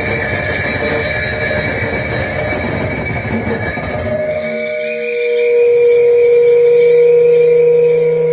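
Live experimental electronic noise music: a dense, grinding noise texture with high held tones, which about four seconds in thins to one held tone over a low drone that swells louder.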